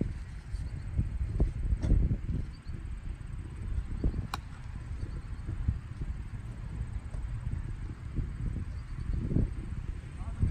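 Wind buffeting the phone's microphone in uneven gusts. There is one sharp click about four seconds in.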